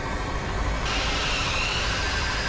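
Loud, harsh noise with a deep rumble that turns hissier and brighter about a second in, with a faint wavering high whine.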